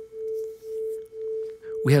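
Two pure tones, 440 Hz and 442 Hz, from tone-generator apps on two devices, sounding together and beating: the loudness swells and fades about twice a second, a 2 Hz beat caused by the 2 Hz mismatch between them. A voice comes in at the very end.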